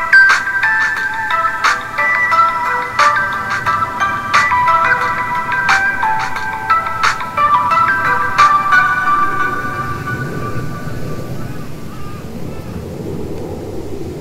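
A slow, soft melody of ringing, bell-like notes fades out about two-thirds of the way through. It gives way to the steady babbling of a shallow stream running between rocks.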